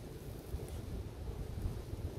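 Wind buffeting the microphone: an irregular, gusty low rumble.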